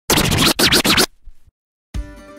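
Intro sound effect: two quick record-scratch sweeps in the first second, then a short silence, and a music sting with sustained tones starting near the end.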